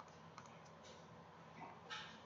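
A few faint, scattered clicks from a computer's mouse or keyboard over near-silent room tone, the loudest just before the end.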